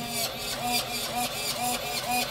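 RC boat steering servo driving the rudder back and forth, a short fixed-pitch whir about twice a second over a steady background hiss.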